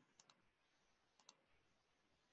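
Faint computer mouse clicks, two quick pairs about a second apart, in near silence.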